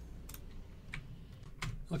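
A few scattered computer keyboard keystrokes over a low steady hum.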